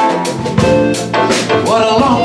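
Live band music: held keyboard chords over a drum kit keeping time with steady cymbal strokes. A voice comes in near the end, sliding in pitch.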